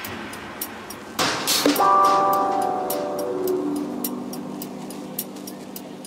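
Background music: a whooshing swell about a second in, then a held chord that slowly fades, over a light, regular ticking.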